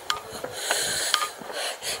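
A person breathing heavily through the mouth while walking, each breath a soft hiss, with a few faint ticks of footsteps.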